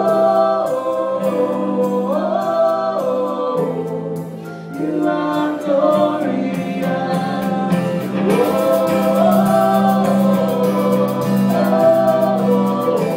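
A live worship band playing: several voices sing long held notes over keyboard, bass and drums. The cymbals are played more busily from about eight seconds in.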